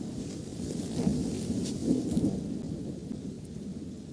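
Low rumbling thunder over steady rain, the storm ambience of a film soundtrack, swelling slightly a couple of times.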